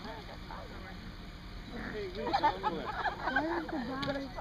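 Bystanders' voices talking and chattering, faint at first and louder from about halfway through.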